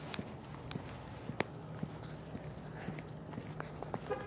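Footsteps of a person and a small leashed dog on a concrete sidewalk: scattered light clicks and taps at uneven spacing, over a steady low hum.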